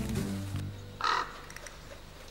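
Background music fading out, then one short, harsh bird call, like a caw, about a second in.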